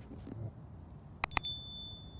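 Subscribe-button animation sound effect: two quick mouse clicks about a second and a quarter in, then a bright bell ding that rings and fades away.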